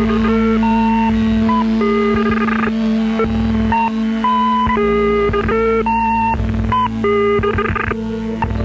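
Ambient electronic music on an Ensoniq SQ-80 synthesizer: a melody of short notes stepping between pitches over a steady held drone, with a low bass that drops in and out.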